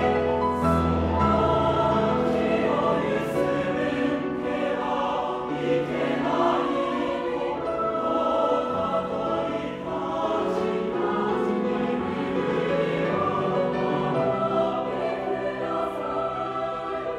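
Mixed choir singing, holding sustained chords that move to new harmonies every second or two.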